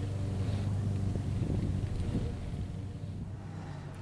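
Toyota Tundra pickup's engine running steadily as the truck tows a trailer across a grassy meadow, easing off slightly toward the end.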